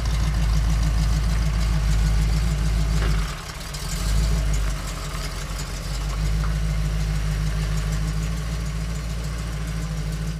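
1980 Jeep CJ-5's engine running as it backs out of a garage, then idling steadily once stopped. The engine sound drops briefly about three seconds in.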